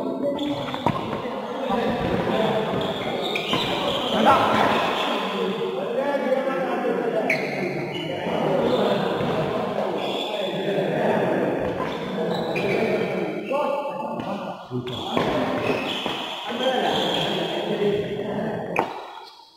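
Badminton doubles rally in an echoing hall: short sharp smacks of rackets hitting the shuttlecock and shoe steps on the court, over a steady bed of voices.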